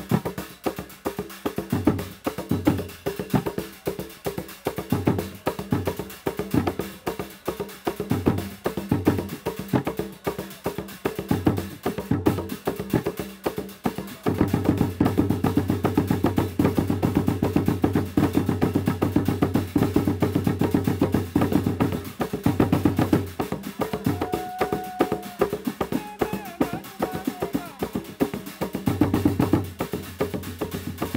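Live Zanzibari Kiluwa ngoma: a group of traditional drums played in a steady, driving rhythm. About halfway through, the strokes run together into a dense, continuous roll for several seconds, then break back into the separate beat.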